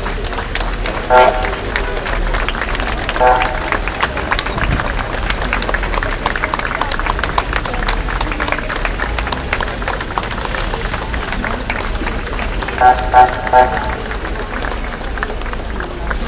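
A crowd clapping steadily, with voices among it. Short car horn beeps sound about a second in and again about three seconds in, then three quick beeps near the end.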